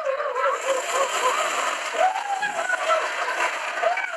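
Several high-pitched voices talking over one another indistinctly, over a steady hiss.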